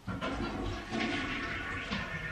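A toilet flushing: a rush of water that starts suddenly and runs on steadily.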